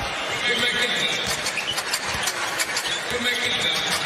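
Arena crowd noise during live basketball play, with a basketball dribbling and brief sneaker squeaks on the hardwood court.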